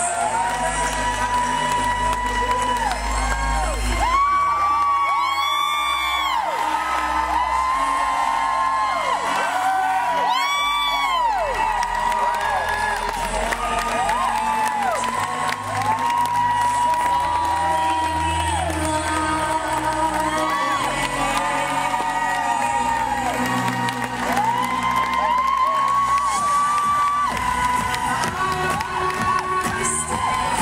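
Live band music with an audience cheering and whooping over it, with loud high whoops about five seconds in and again about ten seconds in.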